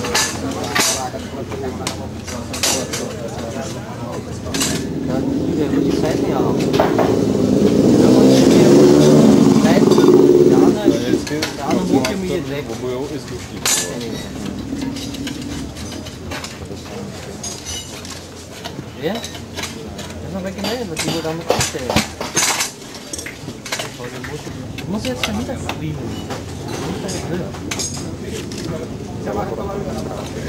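Metal tyre levers clinking and knocking against the spoked rim of an enduro wheel while a knobby tyre is levered off, many sharp clicks scattered throughout, over a background of voices. A louder swell of noise rises about five seconds in and falls away sharply near eleven seconds.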